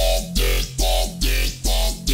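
Dubstep wobble-bass preset from the Cymatics Outbreak bank playing in the Xfer Serum synthesizer, shaped by a band-reject filter. It plays a run of short, loud stabs, a few per second, each with a deep sub tone beneath it.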